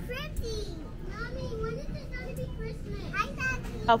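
Young children's voices talking and chattering, the words unclear, over a faint steady low hum.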